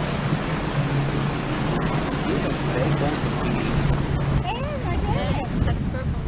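A boat's motor running steadily under a constant rush of wind on the microphone and water. A voice rises and falls briefly about five seconds in.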